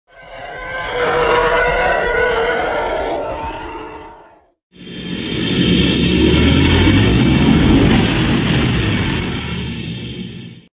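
Two swelling sound effects accompanying an animated logo: the first rises and fades out after about four seconds, then after a short silence a louder one comes in with a deep rumble under a high steady whine, slowly fading near the end.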